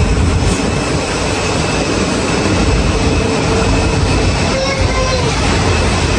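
Steady airport apron noise from jet airliners and ground equipment: a broad, even roar with a faint high whine running through it.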